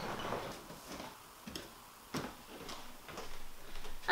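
Quiet room tone with a few faint, short knocks and clicks, the clearest about two seconds in.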